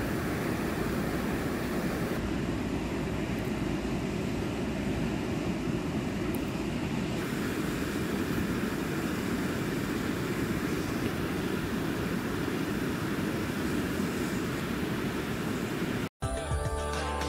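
Steady rush of a fast-flowing river, an even roar of water without a break.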